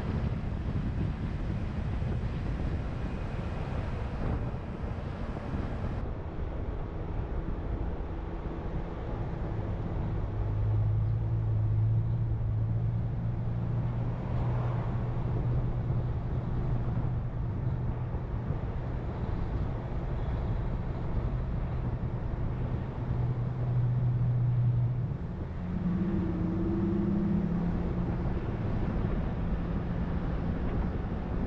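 Wind rushing over the microphone of a camera riding along on a bicycle, a steady low rumble. A low steady hum joins about a third of the way in and gives way to a brief wavering tone near the end.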